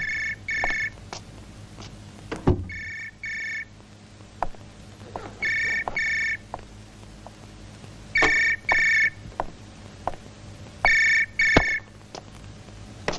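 A landline telephone ringing in double rings, five ring-ring pairs evenly spaced about every two and a half seconds. Faint knocks and clicks come between the rings.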